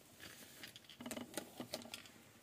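Faint handling sounds of packaging: light taps and rustles as a perfume bottle in a fabric drawstring pouch is lifted clear of its cardboard box, with the taps growing more frequent about a second in.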